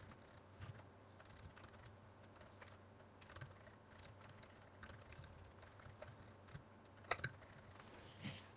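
Faint computer keyboard typing: scattered, irregular key clicks, with one sharper click about seven seconds in.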